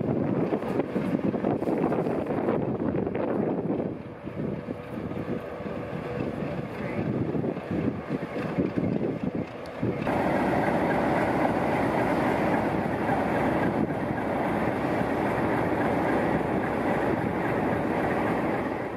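Steady mechanical hum from a stationary diesel-hauled passenger train, mixed with wind gusting on the microphone. About ten seconds in the sound changes abruptly to a steadier, louder noise.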